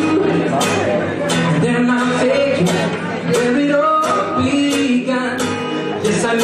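Live acoustic guitar strummed in a steady rhythm while a group sings along in unison.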